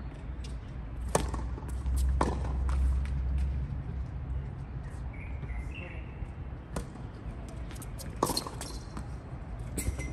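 Tennis ball knocking on a hard court as it is bounced before a serve, then the crack of the racket striking the serve, followed by further ball strikes and bounces from the far end of the court. A bird chirps briefly midway.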